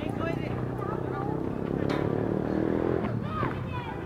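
Short voice calls from people on an open field, over a low steady engine-like drone that swells around the middle and fades near the end.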